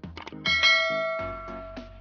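A bright bell-like ding about half a second in that rings on and fades over the next second, over background music. It is the notification-bell chime of a subscribe-button sound effect.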